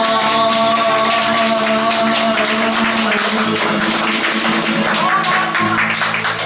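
Acoustic guitar strummed in quick, even strokes, with a man's voice holding one long sung note through a microphone over the first half or so, near the close of the song.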